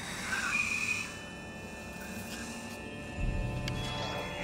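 Tense horror film score of steady droning tones, with a brief louder sound about half a second in and a low rumble that comes in about three seconds in.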